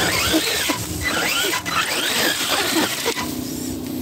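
Electric drive of an Axial Ryft RBX10 RC rock bouncer whining, its pitch rising and falling about five times as the throttle is blipped. The whine stops about three seconds in.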